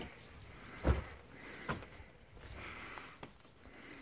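Faint footsteps and scuffs on a debris-covered floor, with a heavier thump about a second in and a lighter knock shortly after.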